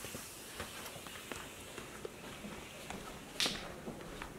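Quiet footsteps and shuffling of people walking through a house, with scattered small clicks and one brief, louder rustle about three and a half seconds in.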